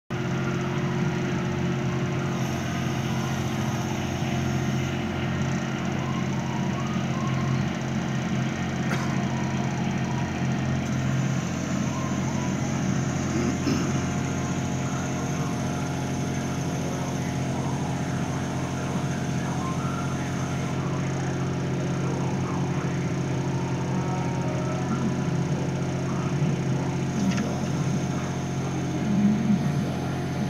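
Compact spider crane's engine running steadily at an even speed, with a few faint clicks as the jib is worked by remote control.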